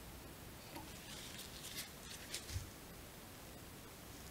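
Faint scratching and rustling of fingers and a bodkin needle handling a small fly held in a tying vise, in a few short bursts, with a soft knock about two and a half seconds in.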